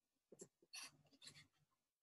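Near silence on a microphone feed, with a few faint brief sounds in the first second and a half.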